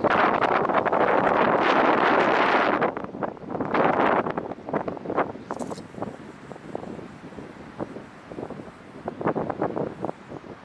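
Strong wind buffeting the microphone, loud for about the first three seconds and again briefly around four seconds, then easing into weaker, gusty rumbles with short pops.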